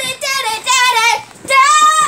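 A young girl singing wordless high notes in a few held, wavering phrases.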